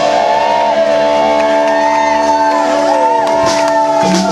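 A live rock band's chord held steadily on guitars, with a crowd cheering and whooping over it.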